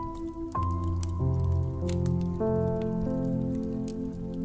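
Soft piano playing a slow run of notes or chords, a new one about every half second from about half a second in, over the scattered small pops and crackles of a wood fire.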